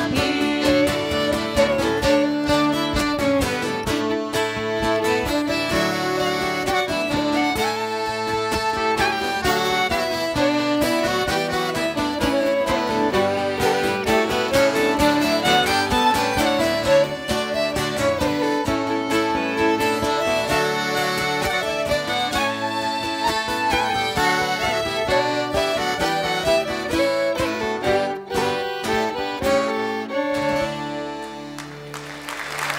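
Live acoustic folk band playing an instrumental break: two fiddles carry the melody over strummed acoustic guitars and a button accordion.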